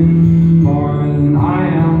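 Male singer holding long, drawn-out sung notes over strummed acoustic guitar, with the pitch stepping to new notes twice. The playing is live through a PA.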